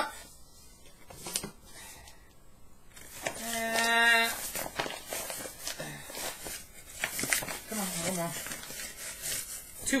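Flour being scooped with a metal measuring cup from a paper flour bag and tipped into a stainless steel mixing bowl: rustling of the bag and light scrapes and taps. About three and a half seconds in, a man's voice holds one steady note for about a second, the loudest sound here.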